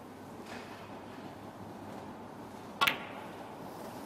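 Quiet arena hum, broken about three seconds in by one sharp click of a snooker ball being struck.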